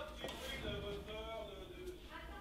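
Faint background voices talking in a room, low and indistinct.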